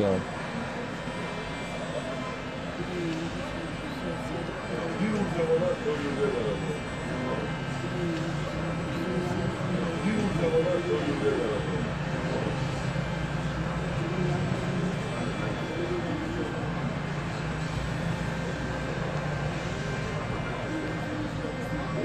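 A fire engine's engine running with a steady low rumble and hum, with indistinct voices of onlookers talking in the background.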